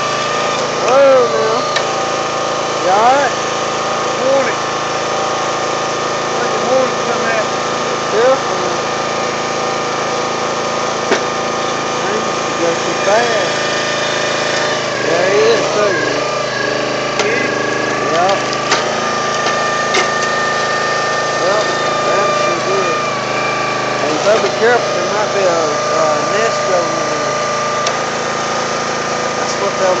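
A small petrol engine running steadily at an even speed, its held tones unchanged throughout, with short rising and falling pitched sounds scattered over it.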